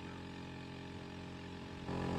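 A steady low mechanical hum, like a small engine or motor running in the background, getting a little louder near the end.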